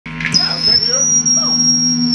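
Live band's amplified rig idling between songs: a steady low hum with a high, steady whine above it, and a voice talking under it.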